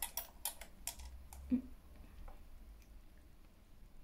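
Several light clicks and taps of small makeup items and a hand mirror being handled, mostly in the first second and a half, with a brief hummed "mm" about a second and a half in.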